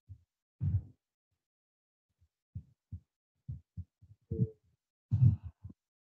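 Irregular short, low thumps and knocks of a microphone being handled on its table stand, with a cluster of louder bumps near the end.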